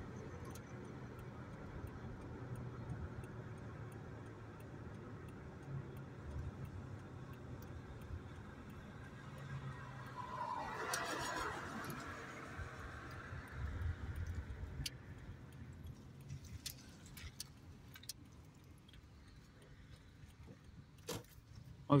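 Steady low engine and road hum inside a moving car's cabin. A louder swell of noise rises and fades about ten to thirteen seconds in, and a scatter of sharp ticks and clicks comes near the end.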